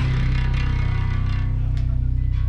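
Live rock band holding a low, sustained bass guitar note that rings steadily, with a single light tap from the drum kit near the end.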